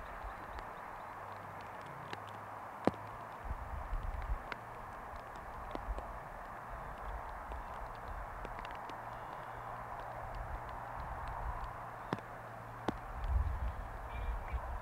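Open-air ambience: a faint even noise with a steady low hum, irregular low rumbles and a few scattered light clicks.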